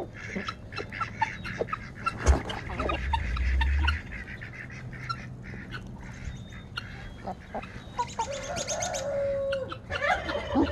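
Mixed flock of chickens, turkeys, guinea fowl and ducks feeding close by: scattered clucks, short calls and pecking clicks. About two seconds in a strutting tom turkey spits and drums, a sharp puff followed by a deep low hum for about a second and a half. Near the end one bird gives a drawn-out call of about two seconds.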